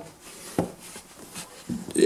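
Quiet pause with a few faint clicks and soft rubbing from hands handling a canvas cartridge belt on a cloth-covered table.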